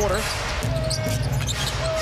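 Basketball dribbled on a hardwood arena court, with brief sneaker squeaks and steady arena crowd noise.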